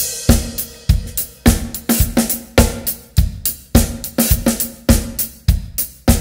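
Acoustic drum kit playing a syncopated funk-soul groove at about 102 beats per minute: kick and snare hits with hi-hat and cymbal strokes between them. It opens on a cymbal crash.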